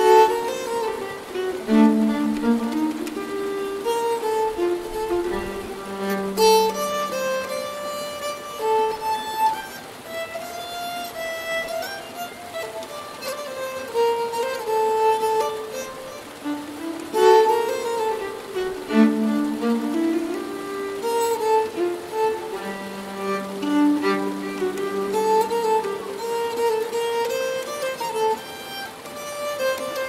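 Nyckelharpa (Swedish keyed fiddle) played with a bow, a Swedish polska melody running in repeating phrases with double stops, over a stream burbling in the background.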